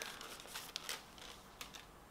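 Faint rustling of disc packaging being handled as a Blu-ray disc is drawn out of its sleeve, with a few light clicks.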